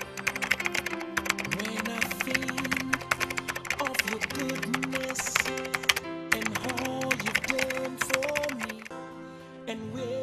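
Rapid keyboard-style typing clicks, a sound effect for on-screen text being typed out, over background music. The clicking stops near the end while the music goes on.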